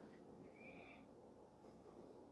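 Near silence: room tone, with one faint, brief high tone about half a second in.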